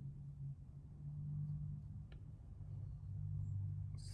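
Quiet room tone: a low steady hum, with one faint tick about halfway through.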